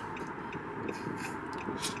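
Steady road and engine noise inside the cabin of a moving car, with a short laugh near the end.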